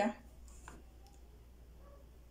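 A pause in a woman's speech: a low steady hum with a single faint click about two-thirds of a second in.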